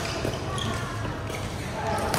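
Badminton rally in a large echoing hall, between the loud racket strikes: a few faint knocks from shuttlecock hits and footfalls, with people talking faintly in the background.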